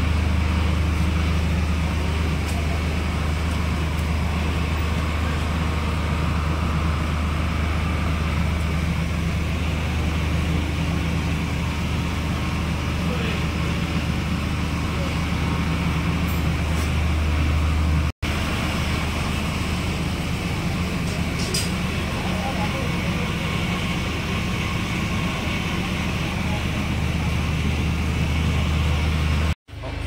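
Heavy diesel engine running steadily at one speed, a low drone, with faint voices of onlookers beneath it. The sound cuts out briefly twice, about eighteen seconds in and near the end.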